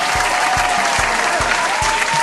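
Dense applause from many hands clapping, with the steady beat of background music underneath.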